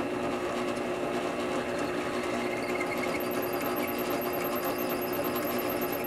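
Bench drill press motor running steadily while its bit drills into a clear acrylic (Perspex) cylinder, boring a deeper, wider hole for a screw.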